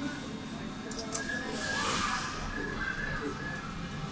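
Passenger lift's doors sliding shut as the car sets off after a floor button press, heard from inside the car as a soft rush that swells about two seconds in.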